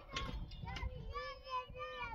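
A child singing a wavering, drawn-out melody, with a low rumble underneath.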